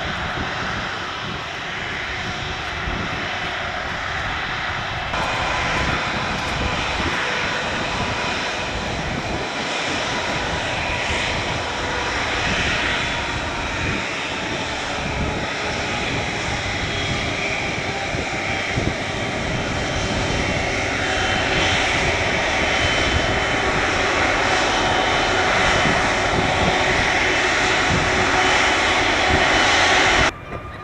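Airbus Beluga XL's Rolls-Royce Trent 700 turbofans running at taxi power: a steady jet whine over a dense rushing noise, growing a little louder in the last third.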